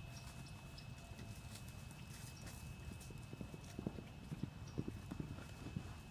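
Hoofbeats of a ridden horse moving on arena dirt: a run of dull, irregular thumps, a few a second, heard mostly from about halfway through.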